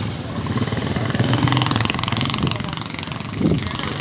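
A small motor vehicle's engine running steadily while on the move, with road noise, heard from on board.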